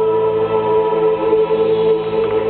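A woman singing one long held note into a microphone over musical accompaniment, amplified through a hall's sound system and recorded from the audience.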